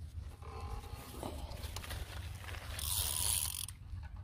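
Spinning reel's drag giving line to a hooked fish that is pulling hard, a brief high-pitched whirr about three seconds in. Under it runs a steady low rumble of wind on the microphone.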